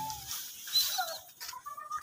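A few short bird calls and chirps, moderately faint, spread over the two seconds, heard just after a held flute note of background music ends.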